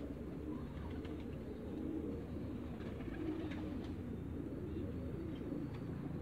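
Muscovy ducks giving soft, low calls that run on steadily without a break.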